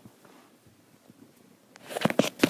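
Faint rustling and light clicks of plush toys being handled by hand, then a sharp, louder knock near the end.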